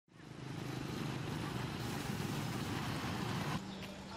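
Street traffic: a motor vehicle engine running close by over road noise, with a wavering low hum. A little before the end the sound drops abruptly to a quieter background with a steady low hum.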